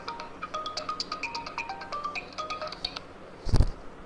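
Mobile phone ringtone playing a quick melody of short notes, for an incoming call; it stops about three seconds in. A loud thump follows about half a second later.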